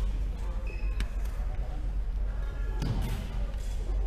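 Badminton play on a wooden sports-hall court: a sharp racket-on-shuttlecock crack about a second in, footfalls thudding on the sprung floor with a heavier impact near the end, and brief shoe squeaks, all over a steady low hall hum with reverberation.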